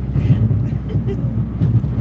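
Steady low road noise inside a moving car's cabin, engine and tyres droning. The car is stiff from the sub-zero cold, which adds to the noise and makes it squeaky.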